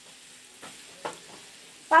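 Food frying in a pan, a steady sizzle with a few faint crackles.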